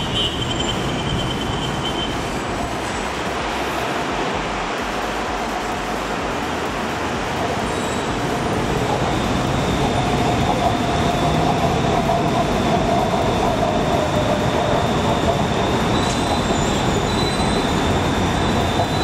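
Steady mechanical traffic noise, growing a little louder about halfway through as a thin whine comes in, with a faint high tone near the end.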